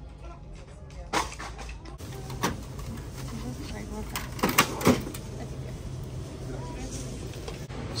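Shop background with a steady low hum and scattered sharp clicks and knocks of items being handled at a checkout counter, most of them in a cluster about four and a half to five seconds in.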